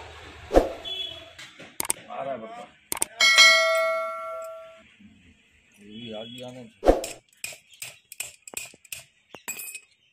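Workshop metal sounds: sharp knocks, a bell-like ring about three seconds in that fades over a couple of seconds, then a heavy knock and a quick run of clinks as cast lead battery connectors are handled.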